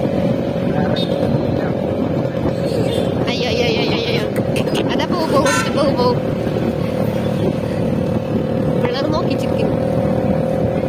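Motorcycle engine running steadily while riding along at road speed, mixed with a dense low rumble of wind noise.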